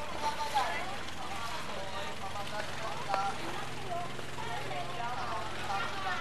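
A boat engine running with a steady low hum, under people's voices talking and calling.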